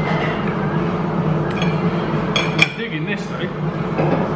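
Cutlery clinking against a plate a few times, the loudest clink about two and a half seconds in, over a steady background din of the room.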